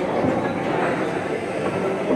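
Rosengart foosball table in play: the rods sliding and rattling in their bearings as the players shuffle the men, a continuous clatter.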